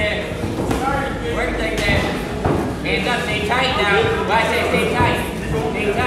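A voice goes on continuously over a steady low hum, with a few short knocks, such as gloved punches landing.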